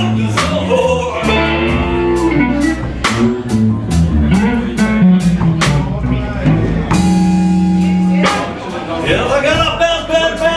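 Live slow blues from an electric guitar, bass guitar and drum kit trio: guitar lines over bass and a steady drum beat, with one long held note about seven seconds in. A man's singing voice comes in near the end.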